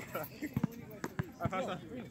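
A basketball bounced on an asphalt court, about five or six uneven bounces.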